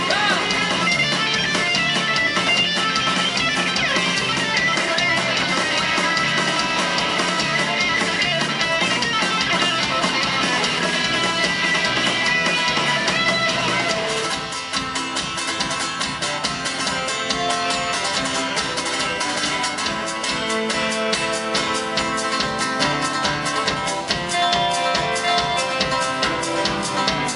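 Live country band playing: drums, bass, electric and acoustic guitars. About halfway through, the sound thins and slightly drops, and a bowed fiddle comes forward with long sustained notes.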